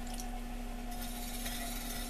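A hand swishing and sloshing in a bucket of clay-laden throwing water, over a steady hum from the spinning electric potter's wheel.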